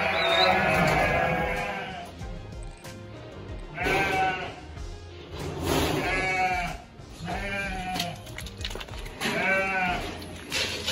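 A flock of sheep bleating, about five calls in all, the first one long and the rest shorter, over background music.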